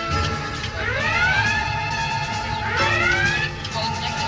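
Starship alert klaxon sounding two rising whoops, about two seconds apart, under background music with steady electronic tones.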